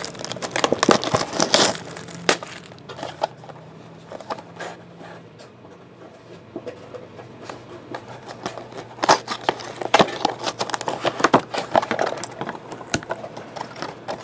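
Cellophane wrap and cardboard of a trading card box being torn and handled, crinkling and rustling with small clicks. The handling is busiest in the first two seconds, quieter in the middle, and picks up again about nine seconds in.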